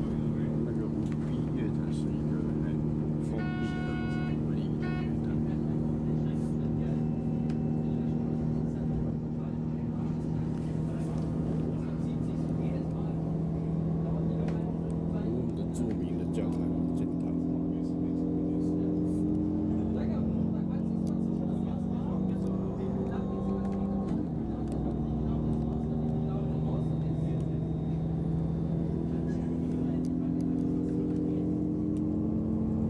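Electric passenger train running, heard inside the carriage: a steady low hum of several tones that shift in pitch as the train changes speed, over the rumble of the wheels on the rails. A brief higher electronic tone sounds about three and a half seconds in.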